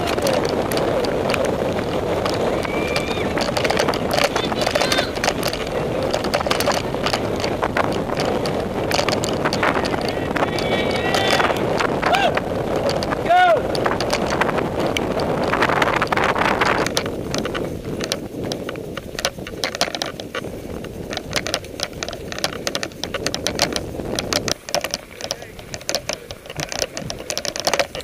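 A mountain bike ridden fast on a dirt road, heard from a bike-mounted camera: a loud rush of wind and tyre noise with a few shouts from spectators through the first half or so. About two-thirds in the rush drops away and the bike's frame and chain rattle and click irregularly over the rough ground.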